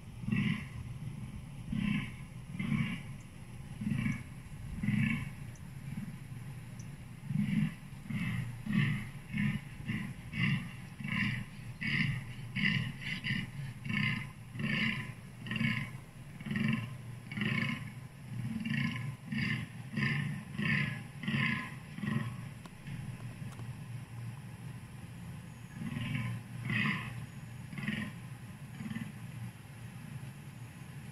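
A rutting deer calling in a long series of short, rhythmic groans, about two a second. The calls pause for a few seconds after about twenty seconds, then a few more follow.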